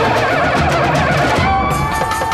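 Background music score: a dense swell of instruments that changes about one and a half seconds in to a new held chord over a quick rhythmic pattern.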